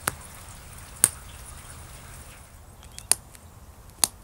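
Sharp clicks of tiny flakes popping off the edge of thin ancient glass under a copper-tipped pressure flaker. Three loud clicks, at the start, about a second in and about three seconds in, with a couple of fainter ticks around the third.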